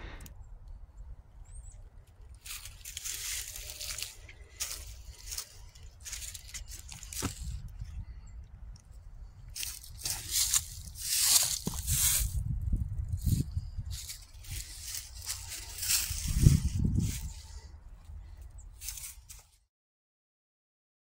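Footsteps crunching through dry fallen leaves in uneven bursts over a steady low rumble. The sound cuts off suddenly near the end.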